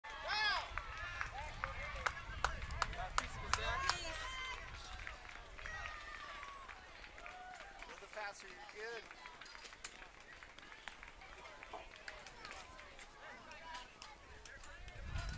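Voices of players and spectators calling out across a youth baseball field, loudest at the start, with a quick run of sharp claps about two to four seconds in and a low rumble on the microphone early on.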